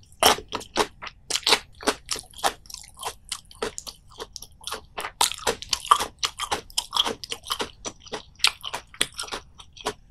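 A person chewing a mouthful of anchovy right at the microphone, with a quick, steady run of wet, crisp crunches.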